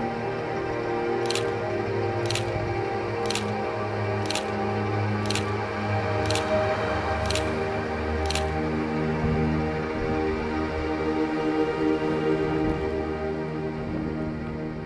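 Background music, over which a camera shutter clicks eight times at a steady pace of about once a second, the clicks stopping a little past halfway.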